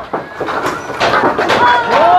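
Knocks and clatter of corrugated roofing sheets and wooden roof timbers being pried loose and handled during demolition, with people talking over it, one voice plainly heard in the second half.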